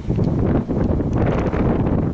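Wind buffeting a camcorder's microphone: a steady, loud low rumble.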